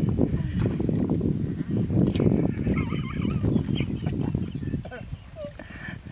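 A wooden paddle churning and splashing in shallow pond water as a small boat is rowed. A short wavering vocal cry comes about halfway through, and the splashing dies down near the end.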